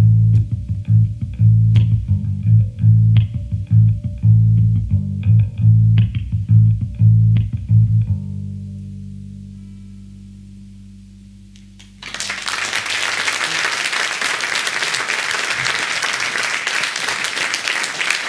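A live band of electric guitar, acoustic guitar and electric bass plays the last bars of a song with heavy, rhythmic bass notes. It stops on a final chord that rings and fades for about four seconds. About twelve seconds in, the audience suddenly breaks into steady applause.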